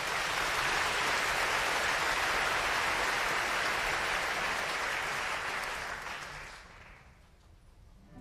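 Theatre audience applauding at the end of a ballet dance. The clapping holds steady, then dies away over the last couple of seconds.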